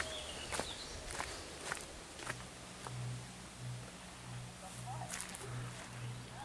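Faint footsteps of a person walking on a dirt and leaf-litter forest trail. From about two seconds in there is also a faint low hum that pulses evenly, about three times every two seconds.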